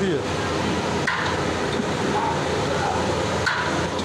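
Steady hissing rush of a huge aluminium pot of onion-and-masala base cooking as turmeric paste is ladled in. Two short metal knocks of the ladle against the pot come about a second in and near the end.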